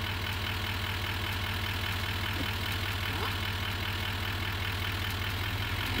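Pickup truck engine idling steadily, a low even pulse with no change in speed.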